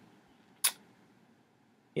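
Near silence with one short, sharp click about half a second in.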